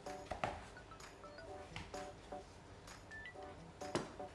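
Faint background music with a few short knocks of a chef's knife cutting through an eggplant slab onto a bamboo cutting board, a slightly louder knock near the end.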